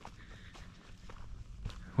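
Faint footsteps on a rocky dirt trail: a few soft scuffs and small ticks, one a little sharper near the end.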